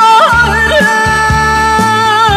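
Korean song demo: a long held melody note that is steady at first and then wavers in a wide, even vibrato, over a steady beat and bass.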